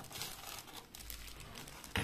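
Plastic zip-lock bag crinkling softly as it is handled and lifted out of a case, with a brief sharp tick near the end.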